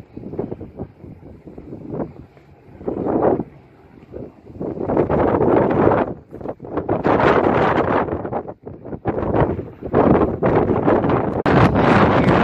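Wind buffeting the microphone in gusts, fairly quiet at first and much louder from about four seconds in.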